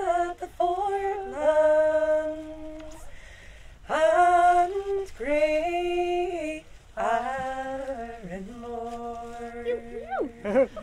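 Two women singing a traditional Irish song unaccompanied, in phrases of long held notes with short breaths between them.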